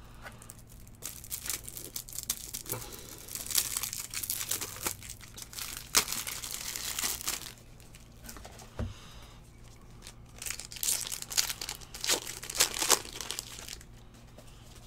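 A foil trading-card pack wrapper being torn open and crinkled by hand, in two spells of crackly rustling with sharp snaps: one lasting several seconds, then a shorter one after a quieter pause.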